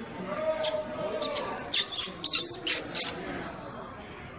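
Faint, quiet speech with a run of short, sharp hissy sounds, like whispered s-sounds, through the middle.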